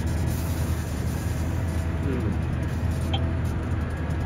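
Tractor engine heard from inside the cab while driving across a field, a steady low drone.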